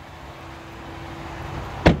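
Shuffling movement noise, then a single sharp, heavy clunk near the end, typical of a pickup truck door shutting.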